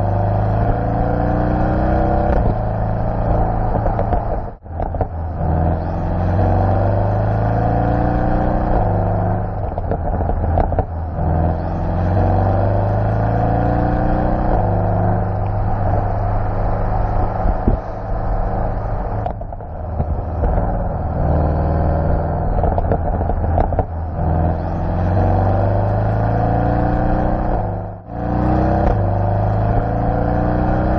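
Porsche 718 Boxster GTS's 2.5-litre turbocharged flat-four boxer engine accelerating hard through the gears: the pitch climbs through the revs and drops back at each upshift, over and over. There are two brief, sudden drop-outs in the sound, about four seconds in and near the end.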